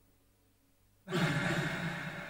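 Near silence, then about a second in a loud, breathy human vocal sound, a sigh, starts suddenly and carries on.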